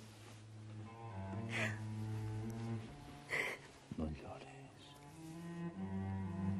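Slow dramatic score of bowed low strings (cello and double bass) holding long notes. Two short breaths from the embracing couple come through, about a second and a half and three and a half seconds in.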